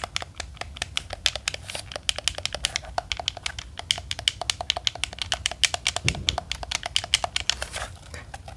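Rapid clicking of a black game controller's buttons pressed close to the microphone, many clicks a second. A brief low thud of handling about six seconds in.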